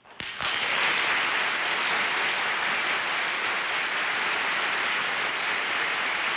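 Studio audience applauding. It breaks out suddenly a moment in and holds steady.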